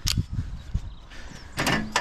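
Footsteps and knocks on an aluminium ladder, with camera handling bumps, as someone climbs up with the camera: a sharp click at the start, a few low thumps, then quieter shuffling. A man starts talking near the end.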